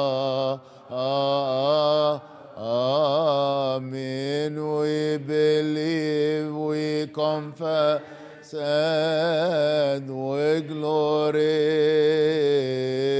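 A man's voice chanting a melismatic Coptic liturgical melody: long ornamented lines with a wavering pitch, broken by a few short pauses for breath.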